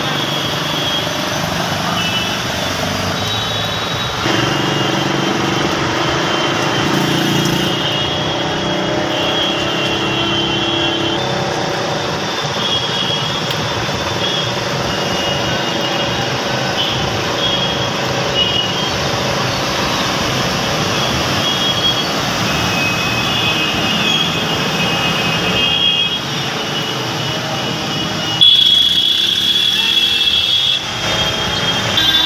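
Street traffic on flooded roads: motorcycle, car and bus engines running over a steady wash of traffic and water noise, with a held tone for several seconds early on.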